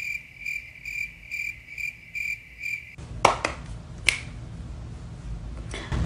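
Crickets chirping in an even pulsing rhythm, about two chirps a second, laid in as a sound effect for an awkward silence; it cuts off abruptly about three seconds in. After that there is low background noise with a couple of sharp clicks and a brief laugh.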